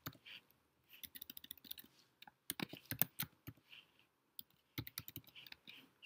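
Computer keyboard typing: faint, quick keystroke clicks in irregular bursts.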